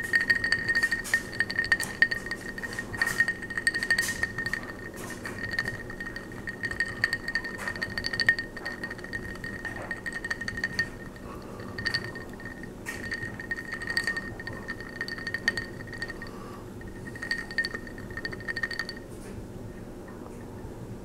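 A glass of Bloody Mary clinking and ringing as it is handled close to the microphone. A clear ringing note is renewed again and again with short breaks, among many small clicks, and stops about a second before the end.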